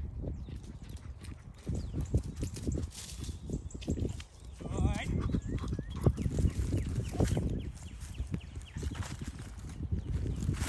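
A dog's paws thudding irregularly on turf as it gallops, over a low rumble. A brief wavering, voice-like sound comes about five seconds in.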